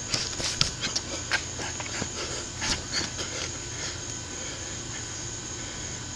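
A boxer breathing hard while shadowboxing, with a run of short, sharp bursts over the first three seconds or so as punches are thrown, then only a steady low hiss.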